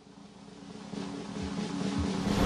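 Faint background ambience fading in and growing steadily louder, with a steady low hum under it.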